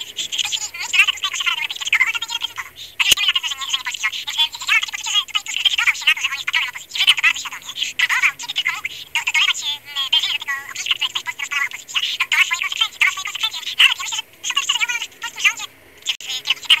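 A person's voice talking almost without a break, thin and tinny as if over a telephone line, with no low end. A single sharp click about three seconds in.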